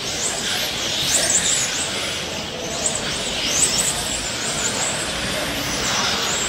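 Several electric 1/10-scale RC touring cars racing, their motors whining in high-pitched glides that rise and fall repeatedly as they accelerate and slow through the corners.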